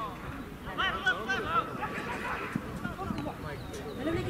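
Indistinct shouts and calls from rugby players and sideline onlookers during play, loudest about a second in, over a steady outdoor background rumble.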